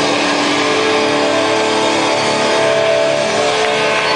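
Heavy metal band playing live at high volume: distorted electric guitars hold long sustained notes over a dense, unbroken wash of noise.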